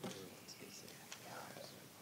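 Faint, low speech in the background: people talking quietly away from the microphones, with a few soft clicks.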